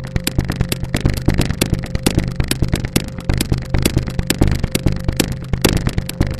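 A rapid, irregular string of sharp cracks, many a second, over a steady low hum.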